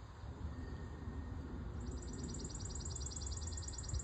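Outdoor ambience: a low rumble, joined about two seconds in by a very high, rapid trill pulsing about a dozen times a second.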